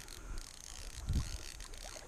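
A fly reel's click-and-pawl drag ratcheting in scattered clicks as line is worked while a bass is played on the rod, with a soft thump a little past a second in.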